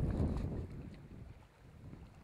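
Wind buffeting the microphone: a low rumble, loudest in the first half second and dying away by about a second and a half in.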